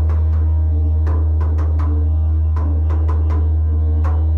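Wooden didgeridoo playing a steady, unbroken low drone, its overtones shifting above it, kept going by circular breathing. About ten sharp, irregularly spaced percussive taps sound over the drone.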